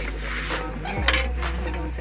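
Metal spatula clinking against the stovetop and tray while potato flatbreads are turned, with a couple of sharp clinks about half a second and a second in, over background music.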